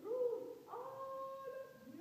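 A child's voice in a drawn-out wailing cry: a short rising-and-falling call, then a long held note starting just under a second in.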